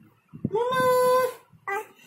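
A high-pitched voice calling 'Mama!' as one long shout held on a single flat pitch, followed by a shorter call near the end.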